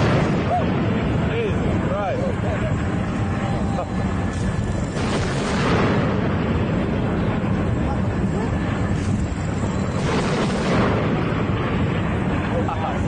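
Naval gunfire: two heavy blasts about five and ten seconds in, over a steady low rumble, with indistinct voices.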